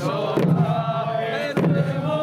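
A group of voices singing a hachigatsu odori song in long, held unison lines, with two drum beats about a second apart, typical of the chijin hand drums that accompany the dance.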